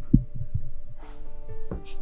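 Dramatic background film score: held synth chords over a run of short, low thumps.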